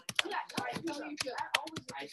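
Quick, irregular clicking of typing on a computer keyboard, several keystrokes a second, with voices talking softly underneath.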